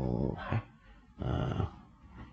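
A man's low voice: a murmured 'hmm' trailing off in the first half-second, then a short 'ha' about a second later. These are filler sounds between sentences.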